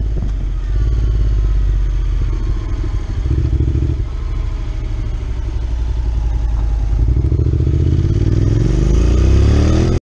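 Motorcycle engine running at low road speed, heard from the rider's seat, with the pitch rising as it accelerates near the end.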